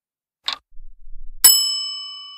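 Countdown timer sound effect: a single clock tick about half a second in, then a bright bell ding about a second later that rings on and slowly fades, marking the end of the countdown.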